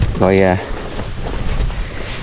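Wind buffeting the microphone: an uneven low rumble with a noisy hiss, with no clear tone.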